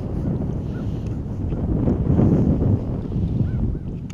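Wind buffeting the microphone: a loud, rumbling low noise that swells about two seconds in.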